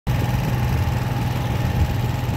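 Steady engine hum and road noise of a vehicle driving along a paved street, heard from on board.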